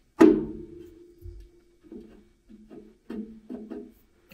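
Background music of plucked guitar: one loud note or strum rings out just after the start and dies away, followed by a few quieter notes.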